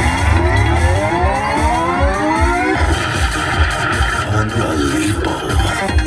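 WMS King of Africa slot machine playing its big-win celebration music over a pulsing beat as the win meter counts up: a sweep of tones rising for the first two and a half seconds or so, then a steady high tone held to the end.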